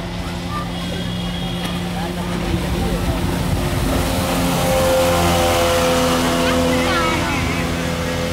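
Speedboat engine approaching and passing close by at speed, growing louder to a peak about five seconds in and then easing off as it moves away, with the rushing wash of its wake.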